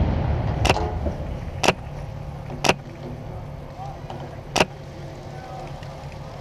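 The rumbling tail of a blast dies away, then four sharp single airsoft gun shots about a second apart, the last after a longer gap, over a steady low engine hum.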